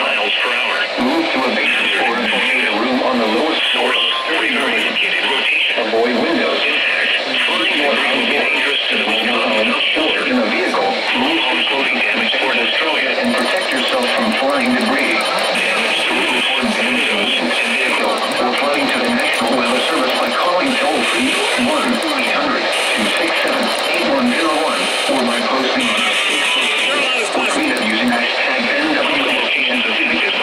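FM radio broadcast playing music with a voice over it, heard through a Midland weather radio's small built-in speaker, thin-sounding with no bass.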